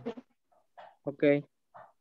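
Speech over a video call: a single low voice says "Ok" about a second in, with two faint, short noisy sounds just before and after the word.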